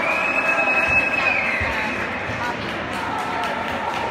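A whistle blown in an ice hockey rink, one steady high note held for about a second that drops in pitch as it ends. It sounds over a crowd of voices and cheering, right after a goal.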